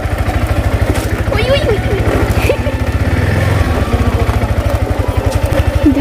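A sport motorcycle's engine running at low speed as the bike is ridden slowly, with a steady, even low pulsing.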